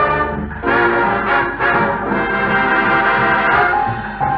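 Dance-band brass section, trumpets and trombones, playing an instrumental passage of a 1950s boogie-woogie record, with a short break about half a second in before the full band comes back in.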